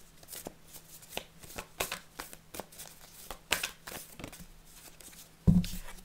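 A Wild Unknown Tarot deck being shuffled by hand: a run of soft, irregular clicks and snaps as the cards slide against each other. A single thump on the table comes near the end.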